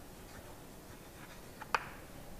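Faint sounds of a pen writing on a surface, with a sharp tap of the pen near the end.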